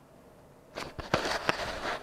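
Handling noise from a handheld camera being moved: a few sharp clicks and knocks with rustling, starting a little under a second in, over faint room tone.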